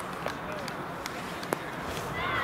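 Distant voices of players and spectators across an open football pitch at full time, with two sharp claps, the louder one about one and a half seconds in.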